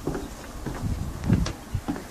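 Footsteps on wooden deck boards mixed with the rumble and knocks of a handheld camera being carried: a few irregular thuds, the loudest about a second and a half in.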